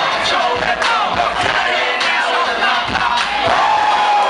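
A dense crowd shouting and cheering, many voices yelling over each other without a break.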